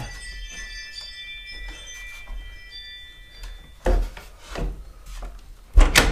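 Several high, steady chiming tones ring together for the first few seconds, then stop. After that come a few sharp plastic knocks as the scooter's plastic body shroud is pushed and seated into place, the loudest near the end.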